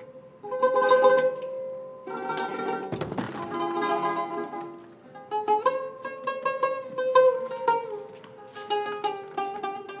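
A plucked string instrument playing a slow melody of single notes, some of them quickly repeated like tremolo. A short dull thump sounds about three seconds in.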